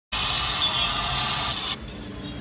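Loud, steady rushing noise of traffic that cuts off suddenly near the end.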